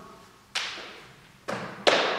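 Three thuds on a wooden floor, about half a second, a second and a half and nearly two seconds in, each with a short echo in the room: sneakered feet stepping and a baseball cap, thrown off the head, dropping to the floor.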